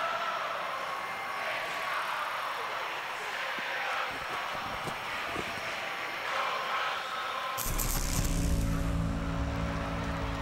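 TV promo soundtrack: a rushing noise that swells and fades several times, then a deep, sustained musical chord with a bright shimmering accent comes in suddenly near the end.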